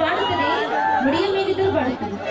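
A voice amplified through a stage microphone and loudspeakers, with chatter behind it.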